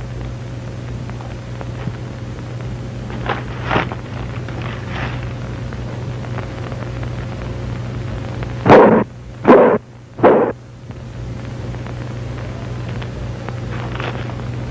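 Three loud, sudden bangs about a second apart, each dying away within half a second, over a steady low hum and hiss; two fainter bangs come a few seconds earlier.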